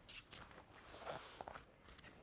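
Faint handling sounds of a laptop being slid and set into place on a sheet of duct tape fabric over a cutting mat: a few soft taps and a light rustle about a second in.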